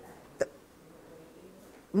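A single short click about half a second in, over faint room tone.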